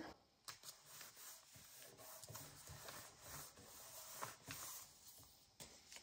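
Faint rustling and light taps of paper: a picture tag being pressed into a paper pocket on a journal page, then another tag picked up.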